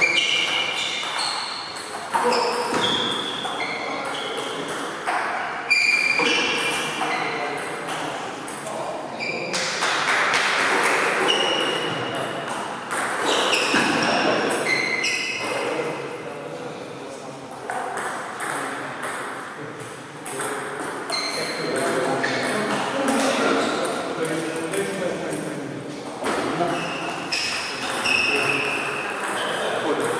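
Table tennis balls being struck by rackets and bouncing on the tables during rallies: short, sharp ringing pings, sometimes in quick back-and-forth runs, with pauses between points.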